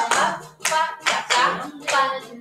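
Hand claps in a steady rhythm, four in two seconds, over music with a beat.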